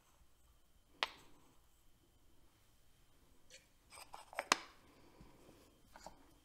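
Small kitchen handling sounds as ingredients go into a Blendtec blender jar: a single sharp click about a second in, like a spoon tapping the jar, then a quick cluster of knocks and clatters a little over halfway through, the last the loudest, as a container is set down and the plastic jar is handled on the counter.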